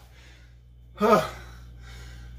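A man's short, loud voiced gasp of breath about a second in, out of breath just after a set of deadlifts.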